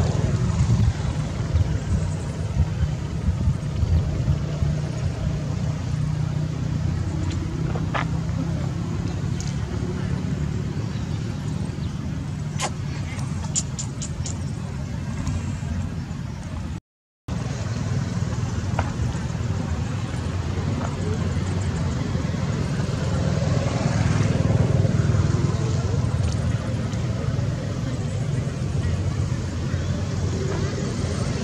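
Wind rumbling on the microphone outdoors, with faint indistinct voices in the background and a few short high clicks near the middle. The sound cuts out completely for about half a second a little past halfway.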